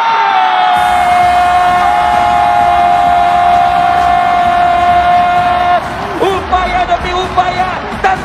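A commentator's long drawn-out 'gooool!' shout for a futsal goal, gliding down at the start and then held for about six seconds before it stops. Under it, a large arena crowd cheers, swelling about a second in.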